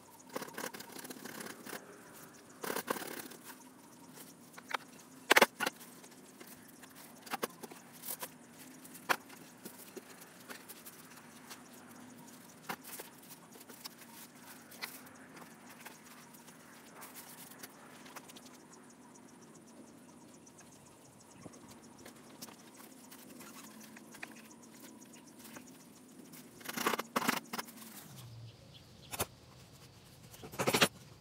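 Gloved hands pressing and scraping damp, gritty bentonite-based refractory mix into a wooden mold, quiet, with scattered light knocks; the sharpest knock comes about five seconds in and a cluster of handling noises near the end.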